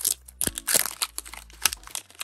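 Foil Pokémon card booster pack wrapper crinkling in a string of irregular crackles as the torn pack is pulled open and the cards slid out.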